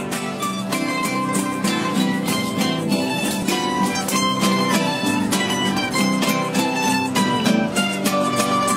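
A plucked-string ensemble of guitars and mandolin-family instruments, estudiantina style, strumming and picking a lively tune in a steady, even rhythm.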